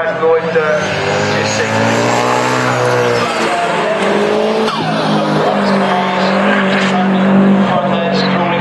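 Time attack race car engine driven hard past the camera. Its pitch climbs for about three seconds, drops at a gear change, then holds high again through the second half.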